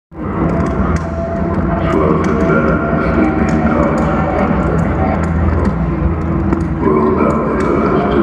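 Live metal band playing loud through an arena PA, heard from the audience, with heavy steady bass and sustained chords.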